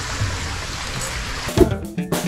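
Steady trickle of running water for the first second and a half, then guitar music starts abruptly.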